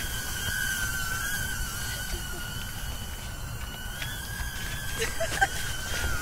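Propellers of a HoverAir X1 palm-sized follow-me drone whining steadily in flight, a high pitch with a fainter higher tone above it, wavering slightly as it tracks a running person.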